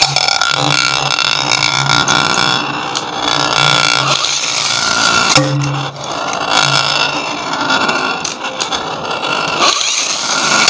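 A light-up battle top (Beyblade-style spinning top) whirring and rattling as it spins against a ceramic plate, just released from its launcher at the start.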